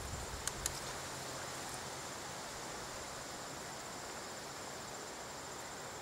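Steady chorus of insects with a thin, continuous high trill, and a couple of faint clicks about half a second in.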